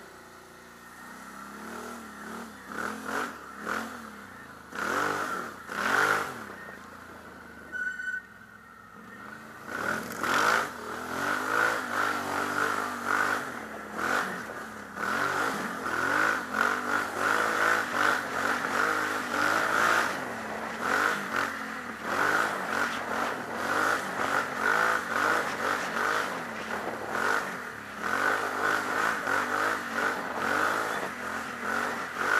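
Can-Am Outlander XXC 1000 ATV's V-twin engine being ridden, its revs rising and falling over and over. It runs lighter for the first ten seconds, then pulls harder and louder, with occasional knocks and clatter.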